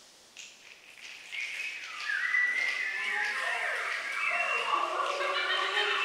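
A choir of many voices making overlapping calls that slide up and down in pitch, starting softly after a brief hush about a second in and building steadily louder.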